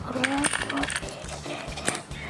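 Small game tokens clicking and clattering against each other and the tabletop as they are counted by hand, with a brief voice sound near the start.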